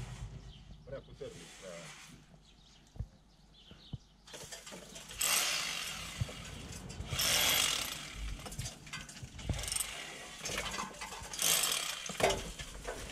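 A tool working an old brick wall, heard from some distance: after a quiet start come several bursts of harsh scraping noise, each a second or two long, as the bricks are cleaned of old mortar.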